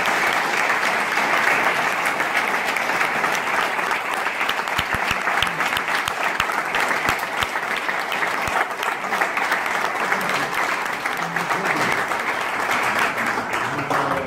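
Sustained audience applause from a room full of people clapping, steady throughout, with a few louder single claps close by in the middle.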